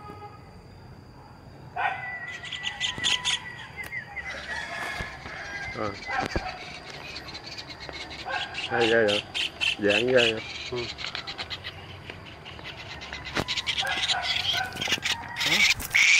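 A kingfisher calling in fast rattling series of short notes, one series from about two seconds in and another near the end.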